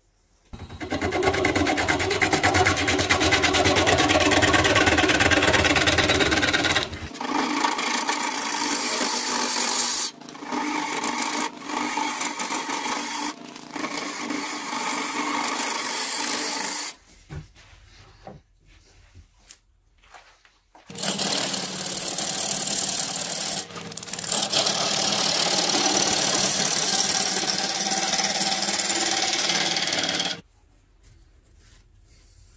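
Turning gouge cutting a spinning, partly rotten wood blank on a wood lathe: a loud scraping, rushing cutting noise that comes in passes. It breaks off briefly a few times and drops away for about four seconds in the middle before the cutting resumes.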